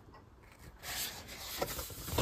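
Cardboard sleeve of a ready-meal pack rubbing and rustling in the hands as the pack is turned over, starting about a second in, with a few soft knocks.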